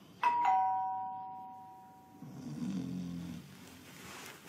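A two-tone doorbell chime, ding-dong: a higher note then a lower one struck just after the start, ringing and fading away over about two seconds. A little past two seconds in comes a low snore from a man asleep in an armchair.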